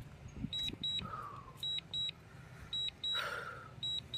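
DJI drone controller warning beeps, in high-pitched pairs repeating about once a second, sounding while the drone auto-lands under remote-controller signal interference. Low steady hum underneath, with a brief rushing noise about three seconds in.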